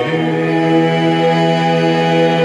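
Small church group singing a cappella in harmony, moving onto a new chord at the start and holding it as one long sustained chord.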